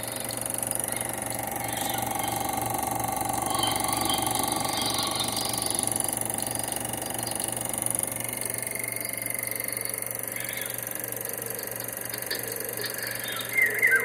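Chinon Sound 9500 Super 8 sound projector running steadily, the even mechanical noise of its film transport and motor.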